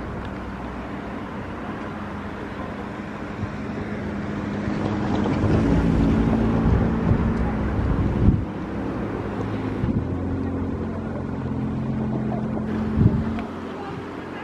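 A vehicle's low steady hum, growing louder about halfway through, with wind rumbling on the microphone.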